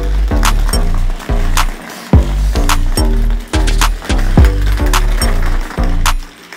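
Background music with a steady beat of about two strikes a second over a deep bass line.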